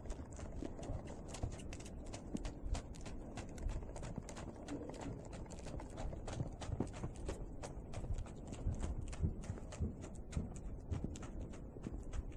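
A young Belgian mule's hooves beating through snow at a brisk pace: a steady, quick run of muffled hoofbeats.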